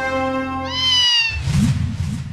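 A single cat meow sound effect rising and then falling in pitch, over a held music chord that cuts off just after it. Fading echoes of it follow about every half second.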